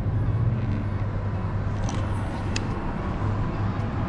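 Steady low rumble and hiss of distant road traffic, with a couple of faint clicks near the middle.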